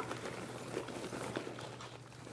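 Popped popcorn pouring out of a paper microwave-popcorn bag onto a pile of popcorn in a baking pan: a loose run of many small, light ticks.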